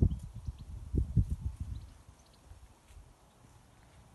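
Irregular low thumps and rumble on a handheld phone's microphone as the person filming moves towards the paintings. The thumps die away about halfway through, leaving only faint light ticks.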